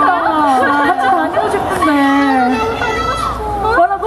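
Several voices talking over one another at once, loud chatter rather than one clear speaker.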